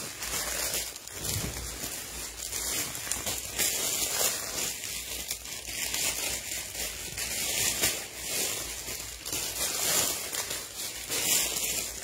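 Plastic garment bag crinkling and rustling as it is handled, with cloth shuffling, in irregular small crackles throughout.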